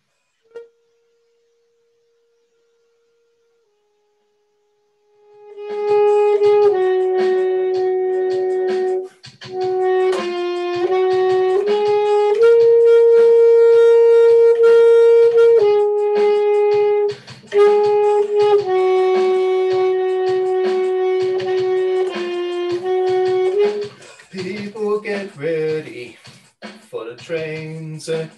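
Saxophone playing a slow melody of long held notes over a video call: one short note about half a second in, then the tune from about five seconds in, turning busier and less steady near the end.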